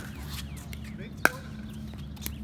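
Pickleball paddle striking the hollow plastic ball in a rally: a sharp pop right at the start, then a louder pop a little past a second in.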